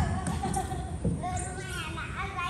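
Young children's high-pitched voices calling out and babbling without clear words, with a short thump right at the start.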